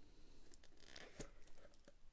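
Faint scraping and a few light clicks as the fitted lid of a cardboard gift tube is eased off.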